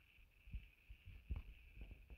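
Near silence: faint room tone with a steady high hiss and a few soft low thumps.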